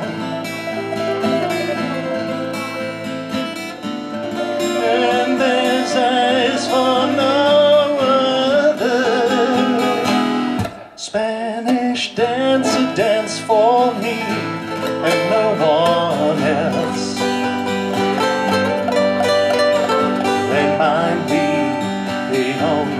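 Live classical guitar playing a song with singing, the melody wavering in pitch, and a brief break about halfway through.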